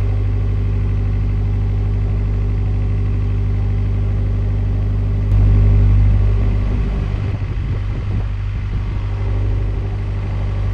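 Narrowboat diesel engine running steadily under way, a low even hum. It gets briefly louder about five seconds in, then eases back.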